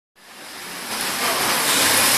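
Steady rushing background noise that fades in over about the first second, with no clear tone or rhythm in it.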